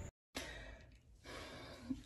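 Faint breathing: a soft sigh-like breath from a woman about to speak, after a brief dead-silent gap at a video cut.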